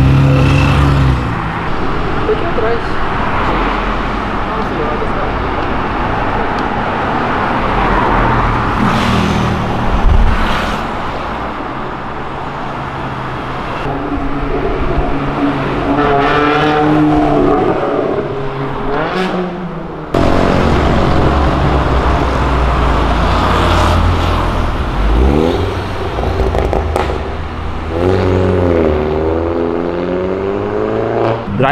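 Several cars accelerating past on a city street, one after another. Their engine notes rise and fall in pitch as they rev, with a loud pass at the very start and another sudden loud one about twenty seconds in.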